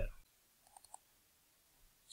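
A few faint computer mouse clicks in quick succession about a second in, in an otherwise quiet room.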